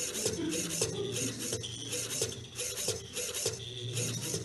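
Servo motors of a small robot arm whirring in short, choppy bursts as the arm moves step by step, with a marker rubbing across paper as it writes.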